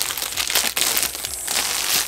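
Clear plastic wrapping being pulled off a spiral-bound notebook: a continuous rustle of thin plastic, louder in the second half.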